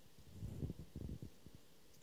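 Faint handling noise: a low rumble with a few soft knocks, from a handheld camera being moved.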